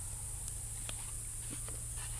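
A person drinking cold milk from a plastic cup: a few faint, short gulps, over a steady high hiss.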